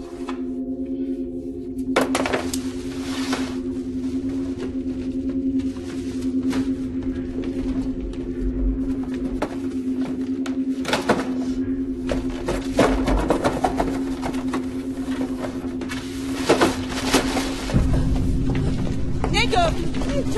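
Suspense film soundtrack: a steady low drone held throughout, with a few sharp knocks and noisy rustles over it. A deeper rumble swells near the end, and wavering high-pitched sounds come in just before it ends.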